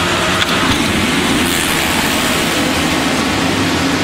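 A full field of 450-class supercross motorcycles revving hard and accelerating away together from the starting gate, a dense, loud mass of engine noise that climbs in pitch as the bikes launch.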